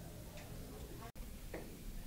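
Quiet hallway room tone between interview answers, cut off by a brief dropout at an edit about a second in.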